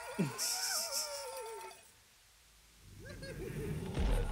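Cartoon dogs screaming in fright, a wavering wail that falls in pitch and breaks off before two seconds in, with a short human 'ooh' and laugh over its start. After a brief hush, a low rumble builds near the end.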